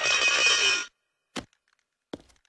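Moo from a cow-shaped moo-box toy can, drawn out and cutting off abruptly a little under a second in. A single sharp click follows about half a second later.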